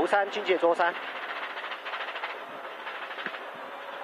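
A co-driver's voice calls pace notes for about the first second; after that the rally car's engine and tyre noise carry on as a steady drone, heard from inside the stripped, roll-caged cabin.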